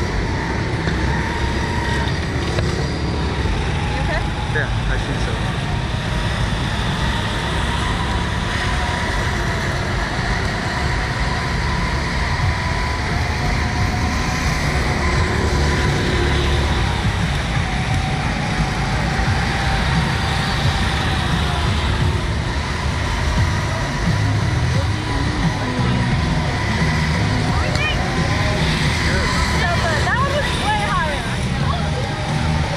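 Steady, deep wind noise on the microphone of a camera mounted on a Slingshot reverse-bungee ride capsule as the capsule moves and settles.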